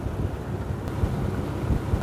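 Steady low drone of a small boat's motor, with wind buffeting the microphone.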